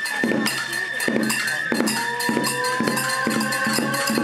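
Kagura festival music: a bamboo transverse flute holds long high notes over steady taiko drum beats, about two a second, with metallic clinking from small hand cymbals.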